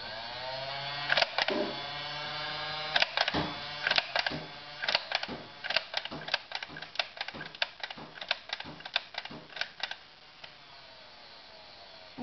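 Nerf Barricade RV-10 toy blaster's battery-powered flywheel motors whining as they spin up, then a quick string of sharp clicks, about two to three a second, as foam darts are fired semi-automatically. The whine dies away about two seconds before the end.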